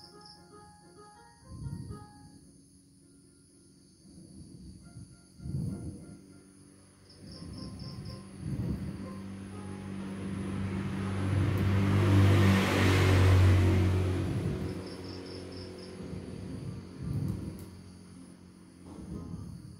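Ab wheel rolling out and back on a rough concrete floor, a short low rumble every few seconds, over faint background music. A louder rumble with a low hum swells and fades about two thirds of the way through.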